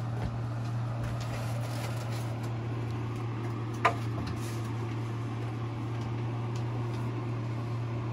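Steady low machine hum, with one short sharp click about four seconds in.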